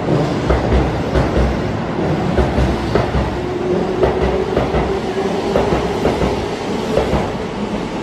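Keihan 8000 series electric train departing, its cars running past at close range with wheels clacking over rail joints and a low rumble; a steady hum joins in about halfway through.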